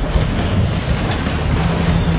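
Background music laid over the footage, a dense steady texture with strong bass; a low held note comes in near the end.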